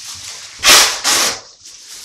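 Painter's tape with attached masking plastic being pulled off its roll in two quick rips, the first a little over half a second in, the second just after.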